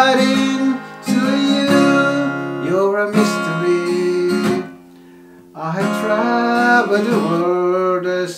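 Acoustic guitar with a capo on the first fret, strummed in chords, stopping for nearly a second about five seconds in before the strumming picks up again.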